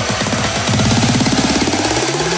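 Electronic dance music: a fast, stuttering synth line with a sweep rising in pitch near the end.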